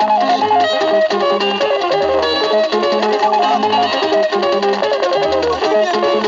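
Instrumental passage of a 1970s Kenyan guitar-band record played on a turntable: interlocking guitar lines over a repeating bass line, with no singing.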